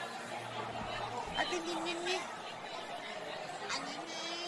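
Background chatter of diners in a busy restaurant hall, a steady babble of many voices with brief snatches of nearer speech.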